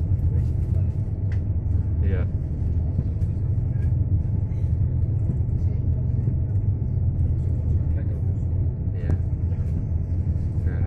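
Boat engine running steadily underway: an even, deep rumble with a faint steady hum above it.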